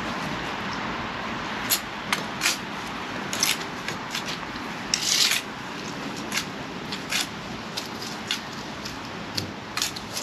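Bricklaying work with a steel trowel: scattered short scrapes and taps of the trowel on mortar and brick, with one longer, louder scrape about five seconds in, over a steady background hiss.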